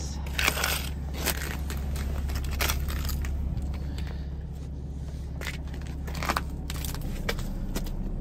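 Sheets of ice crunching, cracking and scraping as they are pried up and broken on a boat's fibreglass deck, a string of sharp cracks, over a steady low rumble.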